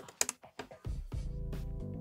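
A few computer keyboard keystroke clicks right at the start, then background music with held low bass notes fades in just under a second in.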